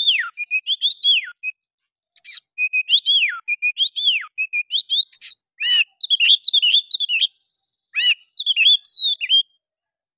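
Oriental magpie-robin singing a fast, varied run of loud whistled phrases and sharp downslurred notes. It pauses briefly about two seconds in and stops shortly before the end.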